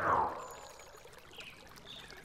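A short cartoon whoosh sound effect that falls in pitch over about half a second at the start, then quiet.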